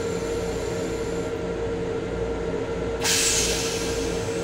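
Steady running noise and hum of an M7 electric railcar, heard from inside its restroom. About three seconds in, the toilet's rinse water sprays into the stainless-steel bowl with a short hissing rush lasting under a second.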